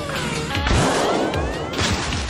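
Cartoon sound effects of a trash bag being launched by catapult: a long whooshing rush with rising tones in it, starting about half a second in, and another short burst near the end, over background music.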